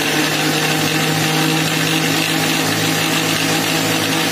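Electric mixer grinder running steadily at full speed, its motor whining with a constant hum as the blades churn coriander leaves and green chillies in water into a paste.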